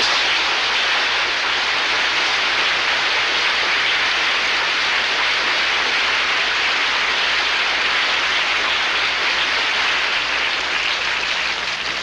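Studio audience applauding steadily to welcome a guest who has just been introduced, dying down near the end.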